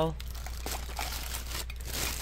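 Clear plastic packaging crinkling and crackling in irregular bursts as the plastic-wrapped floor squeegee is handled and moved.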